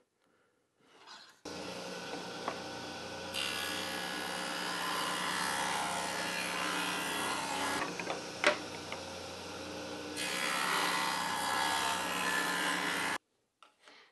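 Table saw with a thin-kerf blade running and cutting a shallow rabbet, a little over an eighth of an inch deep, along an oak board. The cutting noise eases midway and picks up again, with a sharp click about eight and a half seconds in, and it cuts off abruptly near the end.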